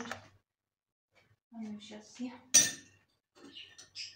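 A metal spoon set down in a plastic mixing bowl, giving one sharp clink with a short ring about two and a half seconds in; faint murmured speech comes just before it.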